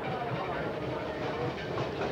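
Passenger train running along the track, heard from inside the carriage as a steady running noise, with faint voices mixed in.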